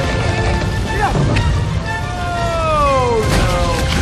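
Film soundtrack mix: music over a heavy low rumble of storm wind from an animated spaghetti tornado, with a long falling pitched glide in the second half and a sharp hit shortly before the end.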